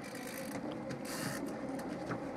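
Fishing reel being cranked while a rainbow trout is reeled in: a quick run of faint gear clicks.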